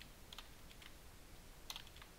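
Faint computer keyboard keystrokes: a few scattered taps, the clearest one near the end.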